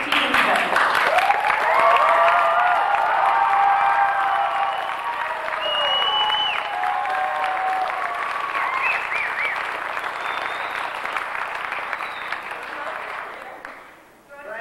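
Audience applauding and cheering, with a short high whistle about six seconds in. The clapping dies away near the end.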